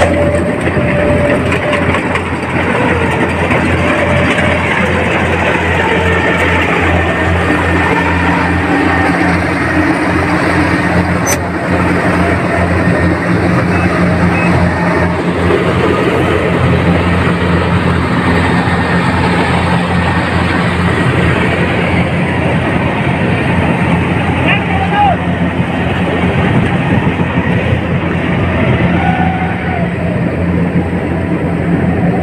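Kubota combine harvester running steadily as it harvests rice, a continuous engine drone with threshing noise, with people's voices mixed in.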